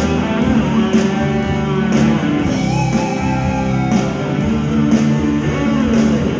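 Electric guitar played live with a rock band, sustained pitched notes over a steady beat, with a gliding lead line in the middle.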